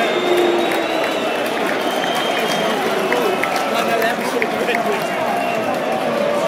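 Football stadium crowd: a steady din of thousands of voices, with several thin high whistles coming and going over it.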